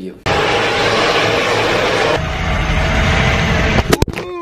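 Loud, steady rushing wind and road noise from a moving vehicle. It cuts in suddenly a moment in and turns deeper about halfway through, with a click near the end.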